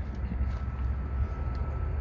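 Steady low outdoor rumble, with a faint thin steady tone through the middle.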